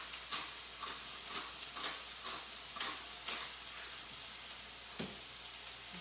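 Hand pepper mill grinding in short bursts about twice a second for the first three and a half seconds, over a faint steady sizzle of diced chicken thighs frying in a skillet. A single light knock near the end.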